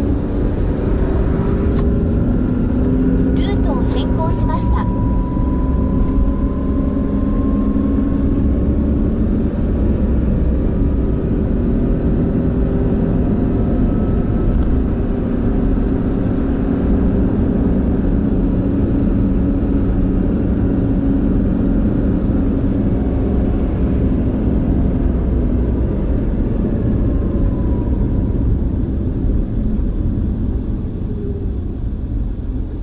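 Car cabin noise while driving on a city road: a steady engine and tyre rumble, with a faint whine rising slowly in pitch over the first ten seconds. A short run of clicks comes about four seconds in.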